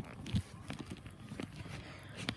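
Footsteps on grass and handling knocks from a handheld camera being carried, a scatter of irregular soft thumps with one heavier thump near the start.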